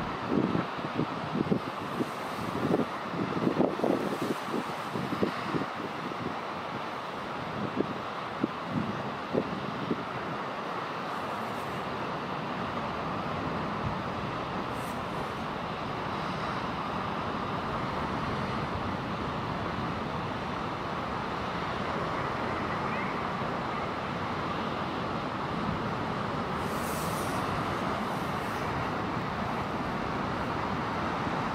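Common guillemot colony on a sea cliff. A steady wash of sea and wind runs throughout, and a scatter of short low growling calls comes in the first ten seconds or so.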